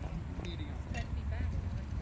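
Voices calling and chattering at a distance around a youth baseball field, over a steady low rumble, with a couple of faint knocks.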